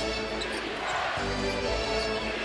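A basketball being dribbled on the hardwood court, with arena music playing over it.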